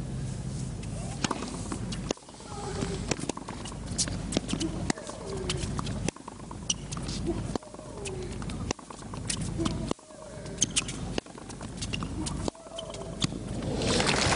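Tennis rally: the ball is struck back and forth by racquets, a sharp hit about every second and a half, with a player's short vocal grunt on several of the shots.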